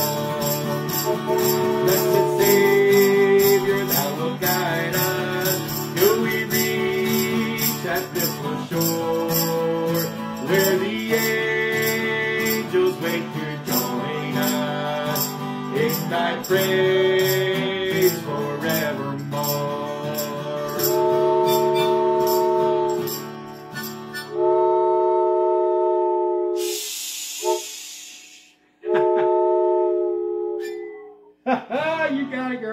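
Upbeat instrumental on acoustic guitar and harmonica over a steady fast rhythm of high clicks. About 24 seconds in the guitar stops, and a wooden train whistle sounds three held chord blasts, with a short burst of hiss between the second and third.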